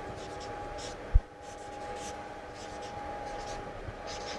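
Felt-tip marker writing on flip chart paper: a run of short, squeaky strokes. A single low thump about a second in.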